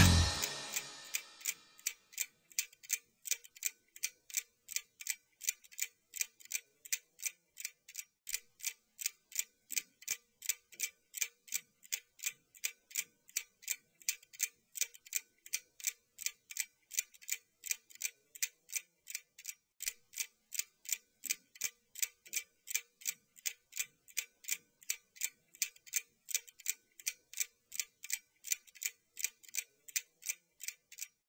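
Steady, even ticking, about three sharp ticks a second, like a clock. The loud song before it dies away in the first second or so.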